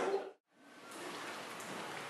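A loud sound fades and cuts out to a moment of dead silence, then a steady, even hiss of background noise runs on.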